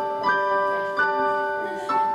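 Yamaha electronic keyboard playing a piano voice: three chords struck under a second apart, each left to ring, the last one slowly fading.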